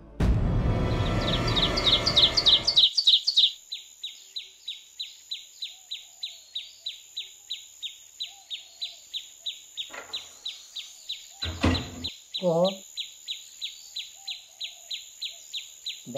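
A bird chirping in a steady, regular series of short high chirps, about three a second. For the first three seconds the chirps sit under a loud rush of noise. Late in the clip a short knock sounds, then a brief voiced sound.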